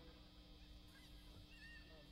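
Near silence: a faint steady hum from the stage amplification, with a few faint high chirps about halfway through.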